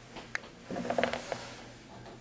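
Video camera's zoom lens motor working: a couple of small clicks, then a brief mechanical whirr with ticks about a second in, as the lens zooms in.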